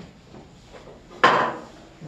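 A single sharp knock of a hard object, about a second in, dying away quickly in a small room; otherwise faint room noise.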